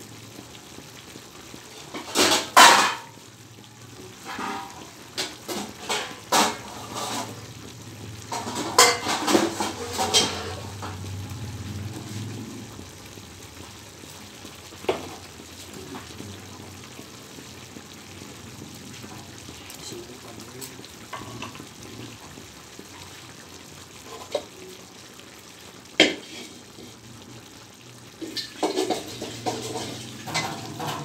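Scattered clinks and clatters of metal cookware and utensils, the loudest a couple of seconds in and another cluster around nine to ten seconds, over a steady low kitchen hiss.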